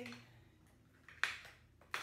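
Broken eggshells handled in a ceramic bowl, giving two sharp clicks: one just over a second in, the louder, and another near the end.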